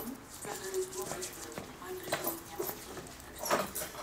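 A woman humming or half-singing a tune to herself in short held notes. Near the end comes a sharper clatter as the front door is opened.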